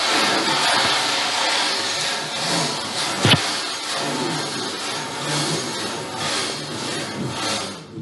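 Handling noise: the camera's microphone rubbing and scraping against shirt fabric and a card, with a sharp knock about three seconds in. The rubbing stops just before the end.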